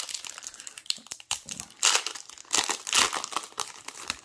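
Foil wrapper of a Yu-Gi-Oh booster pack being torn open and crinkled by hand, in a run of irregular crinkling bursts, loudest about two and three seconds in.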